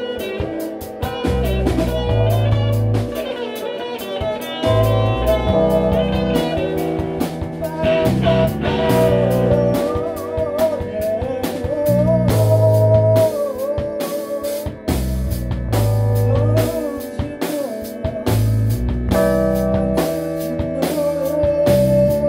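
Instrumental experimental rock: a drum kit plays busily over a deep electronic bass that repeats a pattern of long low notes. A psychedelic electric-guitar riff runs on top, its notes bending and wavering in pitch around the middle.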